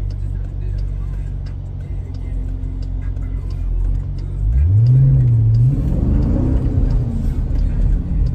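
2020 Jeep Grand Cherokee SRT's 6.4-litre V8 heard from inside the cabin, running steadily at first; about four and a half seconds in the engine note rises, eases briefly and rises again, getting louder as the SUV accelerates hard.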